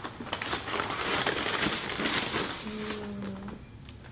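Paper bag crinkling and rustling as a foam takeout box is pulled out of it, dying down after about three seconds, with a short low hum near the end.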